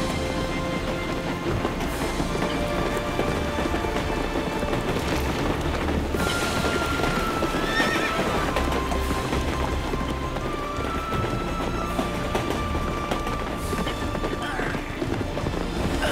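A horse galloping hard, with hoofbeats and a whinny, over film-score music that holds long steady notes.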